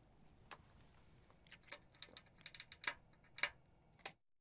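Faint, irregular clicks and light clinks, about a dozen of them and more frequent in the second half, over quiet background noise.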